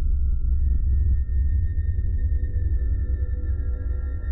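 Suspense background score: a deep, steady rumbling drone under thin, high sustained tones, with a second high tone joining about half a second in.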